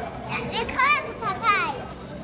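A young child's voice: a few short, high-pitched vocal sounds whose pitch swoops up and down, over the murmur of a busy indoor space.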